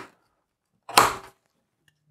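Aluminium lid of an Acasis USB4 NVMe SSD enclosure pressed shut, giving one sharp click about a second in. The lid closes fully over the thermal pad.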